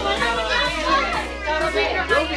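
Several children and adults calling out and chattering at once, a mass of overlapping excited voices around a children's floor game.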